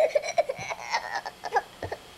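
Toddler laughing in a rapid string of short bursts that trails off near the end.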